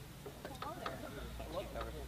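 Indistinct talking from several people standing close by, with a low rumble coming in about a second in.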